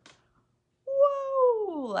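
A single drawn-out, meow-like vocal cry. It starts a little under a second in, rises slightly, then slides down in pitch for about a second.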